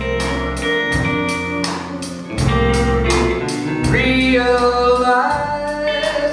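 Live band music: electric guitar and bass guitar over drums keeping a steady beat, with bending guitar notes.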